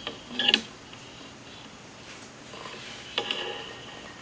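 Two short, sharp clattering clicks with a brief ring, one about half a second in and one about three seconds in, over a steady faint high-pitched hiss.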